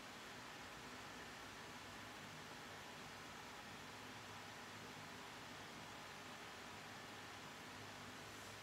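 Near silence: a steady, faint background hiss of room tone.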